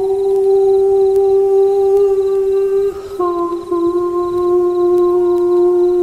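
Slow meditative music: a voice humming long held notes, stepping down to a lower note about three seconds in.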